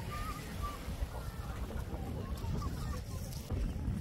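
Wind buffeting the microphone in a steady low rumble, with faint distant voices of people on a beach.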